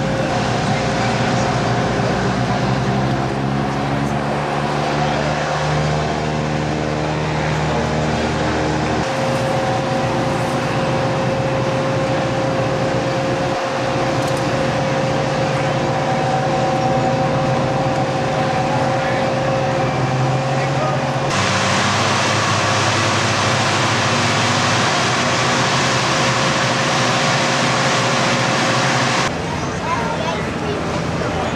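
Steady engine drone with a high steady whine over it. Its pitch and mix change abruptly twice.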